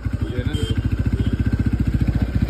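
Motorcycle engine idling with a steady, rapid pulsing beat.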